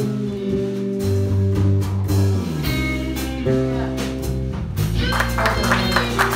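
Live band playing a slow ballad: electric guitar and bass guitar holding long notes over drums. About five seconds in, the drums and cymbals get busier and the music grows fuller.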